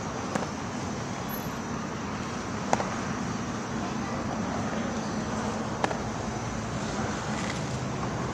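Steady outdoor traffic noise with a faint hum, broken by three sharp, short knocks spaced about three seconds apart.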